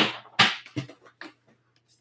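Clear plastic storage tub of seed-starting mix being picked up and handled: a sharp knock at the start, a louder scraping rustle of plastic about half a second in, then a few faint light clicks.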